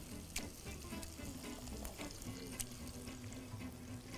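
Coated fish fillet pieces frying in shallow oil in a pan: a soft, steady sizzle with a few crackling pops.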